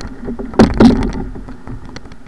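Whitewater washing around the bow of an ocean ski as it is launched through breaking surf. There are two loud splashes against the hull a little over half a second in, then a quieter steady wash.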